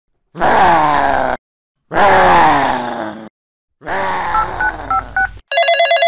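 Three long wordless vocal groans, each falling in pitch, with a few short beeps over the third. Near the end a telephone starts ringing with a rapid trill.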